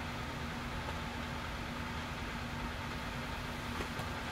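A home furnace running, a steady, loud rush of air with an even hum beneath it.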